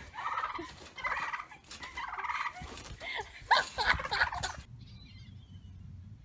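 A turkey gobbling: three rapid, rattling gobbles in quick succession over the first two and a half seconds, then sharper calls and a thump before the sound breaks off about three-quarters of the way in, leaving a low hum.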